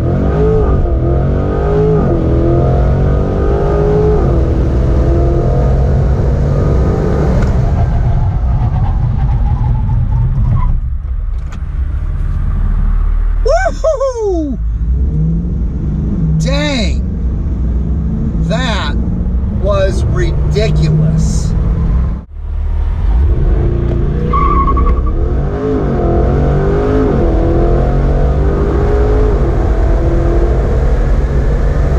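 2020 Chevrolet Corvette C8's mid-mounted 6.2-litre LT2 V8 under full-throttle acceleration, heard from inside the cabin, its note rising through the gears with quick upshifts. About midway the sound drops back and comes in several short rising-and-falling revs. After a sudden break at about two-thirds of the way, the engine pulls hard through the gears again.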